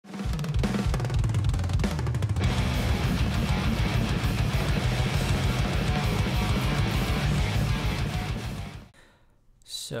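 Heavy progressive metal music with rapid, dense drumming and sustained low bass notes, fading out near the end.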